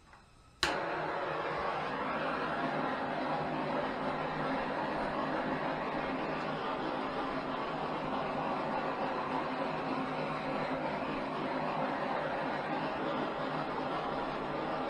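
Small handheld gas torch clicked alight about half a second in, then burning steadily with an even hiss as its flame is passed over wet acrylic pour paint to bring up cells.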